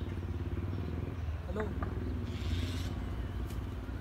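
An engine running steadily nearby, a low, evenly pulsing hum, with a brief voice about a second and a half in.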